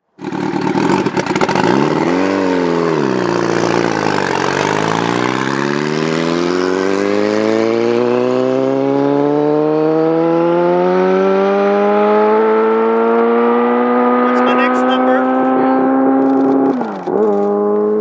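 Sport motorcycle engine blipping, its note sagging as the bike pulls away from a standstill, then climbing steadily in pitch for many seconds as it accelerates away. Near the end the note dips briefly and picks up again.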